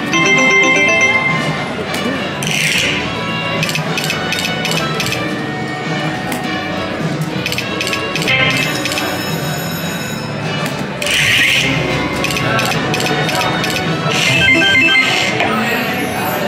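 Brian Christopher 'Line It Up' video slot machine playing its electronic jingles and chimes through repeated reel spins, with ticking as the reels land and two short whooshes, about 3 and 11 seconds in.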